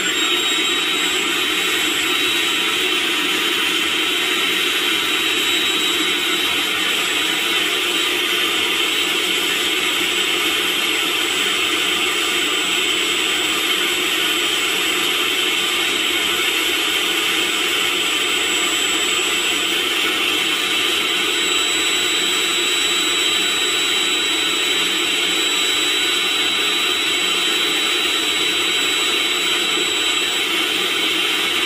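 Milwaukee M18 compact cordless hand vacuum running flat out on an M18 5.0Ah battery, its motor giving a loud, steady high whine over a rush of air. The intake is choked with a thin sleeve and a wet tissue, so the motor is running under load.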